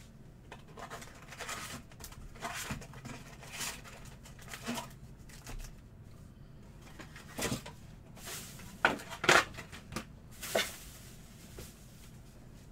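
Wrapped trading-card packs being pulled from a cardboard hobby box and set down in a stack: a string of light crinkles and taps, the sharpest few about three quarters of the way through.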